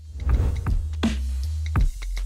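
Background electronic music with a heavy, steady bass line, with swooshing transition sound effects over it, the sharpest one just before the end.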